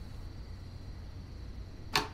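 A single short, sharp click near the end, over a faint steady low hum.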